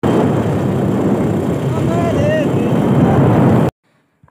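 Wind buffeting the microphone on a moving motorbike carrying riders, with engine and road noise beneath; a brief voice is heard about two seconds in. The sound cuts off abruptly near the end.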